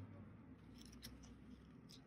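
Near silence, with a couple of faint clicks as the cardstock pages of a small handmade mini album are handled and turned.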